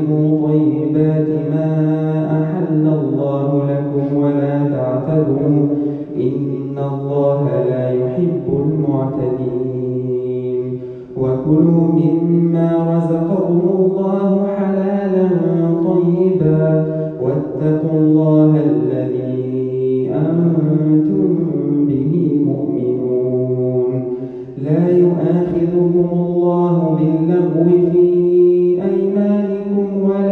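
A man reciting the Quran in melodic tajweed style, holding long drawn-out notes that rise and fall, with short pauses for breath between phrases, the clearest about 11 and 25 seconds in.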